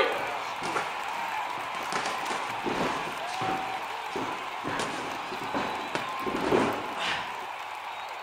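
Thuds and slaps of a scuffling boxing bout in a ring, with boxing-glove hits and a body dropping onto the ring floor, mixed with grunts and short shouts.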